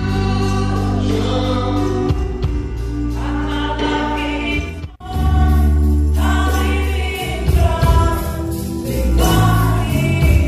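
Live gospel praise music: singers over a band with a strong bass. The sound breaks off for an instant about halfway through, then resumes louder.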